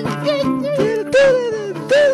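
Psychedelic rock music: a lead voice sliding up and down in pitch over steady held chords.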